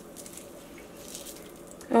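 Quiet wet squelching and dripping as hands squeeze soaked tamarind pulp in water, with liquid running off the fibres back into a stainless steel bowl.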